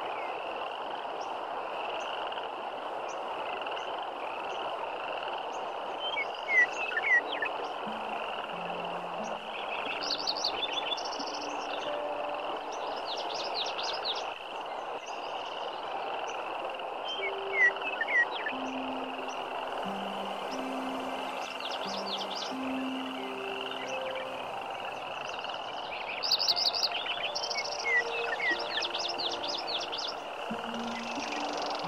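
A shallow river runs steadily over rocks. Short chirping animal calls come in clusters over the water several times.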